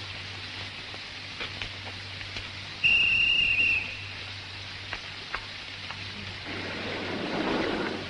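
Steady rain with a few scattered drips, and about three seconds in a single high, steady whistle that lasts about a second and stands out as the loudest sound.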